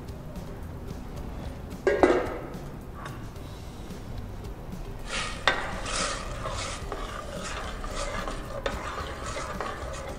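A utensil stirring sauce in a steel saucepan: a single knock about two seconds in, then a run of short scraping strokes from about halfway.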